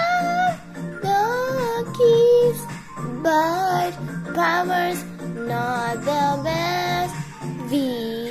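A child singing a song over a musical backing, with long held notes that slide between pitches.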